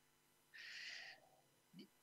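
A man's short breath drawn in during a pause in his talk, a soft hiss of under a second, followed near the end by a faint, brief mouth or throat sound.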